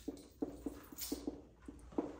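Dry-erase marker writing on a whiteboard: a faint run of short squeaks and taps, several a second, as the letters are stroked out.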